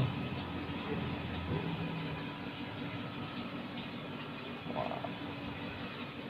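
Steady low background hum of the room, with a brief faint higher sound about five seconds in.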